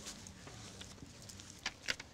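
Faint handling sounds of small objects at a table: a few light clicks over a low room hum, with two sharper clicks near the end.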